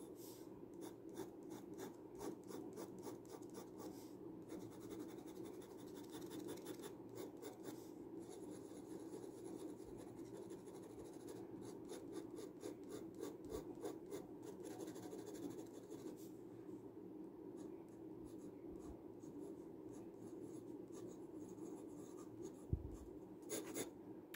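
Glass dip pen nib scratching faintly across paper in quick, repeated short strokes as it writes letters and hatching, with brief pauses between bursts of strokes.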